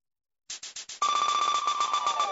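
Electronic intro stinger of a TV news show, starting out of silence about half a second in: a quick fluttering pulse, then from about one second a steady, high, ringing electronic tone, with falling pitch sweeps setting in near the end that lead into the theme music.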